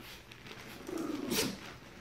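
Small dogs play-fighting: one gives a short growl about a second in, ending in a sharp snort or snap.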